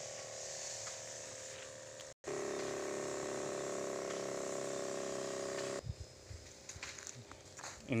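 Motorised knapsack sprayer running with a steady hum while spraying up into a tree's canopy, from about two seconds in until near six seconds. Softer outdoor background before and after, with a few light knocks near the end.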